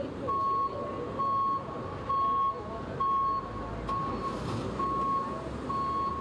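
Vehicle reversing alarm beeping in a single steady tone, a little faster than once a second, over a low continuous rumble of street noise.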